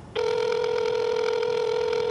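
Telephone call tone: one steady electronic tone, starting a moment in and cutting off after about two seconds, as a phone call rings through.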